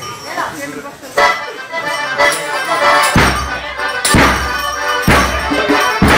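Traditional folk music on accordion starting about a second in, joined about three seconds in by a strong beat roughly once a second.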